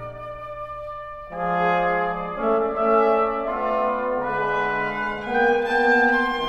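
Contemporary classical chamber music: soft for about the first second, then several instruments enter together on long held notes that overlap and shift from pitch to pitch.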